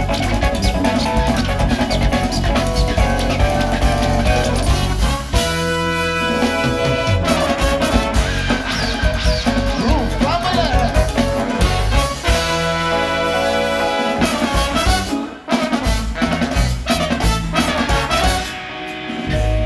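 A large live band playing: drum kit and bass under a horn section of trumpets, trombone and saxophone, which holds long chords twice. The music drops out briefly about three-quarters of the way through, then comes back in.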